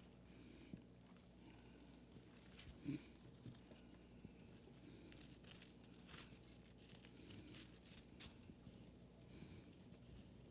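Near silence in a small room, with faint rustling of Bible pages being turned and a soft bump about three seconds in.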